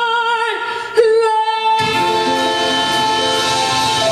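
A woman singing live into a microphone, holding a note with vibrato over almost no accompaniment, then opening onto a new, louder note about a second in. The backing band comes back in under her voice just before two seconds in.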